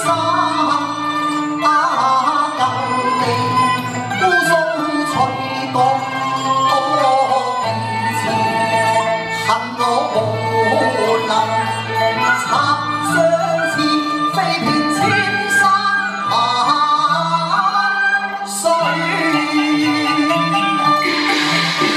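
A man singing a Cantonese opera song into a microphone over instrumental accompaniment, amplified through a hall's sound system.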